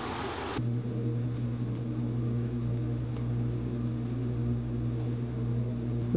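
A brief even hiss cuts off about half a second in. It gives way to a steady low mechanical hum with a few overtones, such as a kitchen appliance's motor or fan running.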